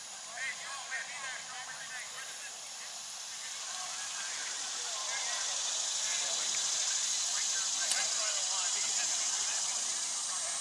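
Distant voices of players and spectators calling out across an open playing field, with a steady high hiss that swells from about halfway through.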